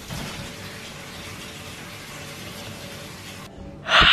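Water running steadily from a kitchen tap, a smooth rushing hiss that stops abruptly near the end. A loud shout follows just before the end.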